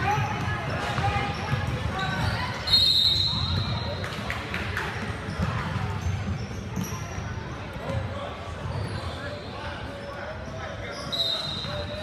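Basketball game in a gymnasium: a ball bouncing on the hardwood floor and players' voices and calls, echoing in the large hall. A shrill, steady high-pitched sound comes in about three seconds in, the loudest moment, and again near the end.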